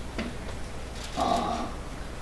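A pause in a man's speech at a microphone: a low steady room hum, with a brief faint voice-like sound a little after a second in.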